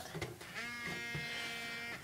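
Mobile phone vibrating with a steady buzz, starting about half a second in, signalling an incoming text message.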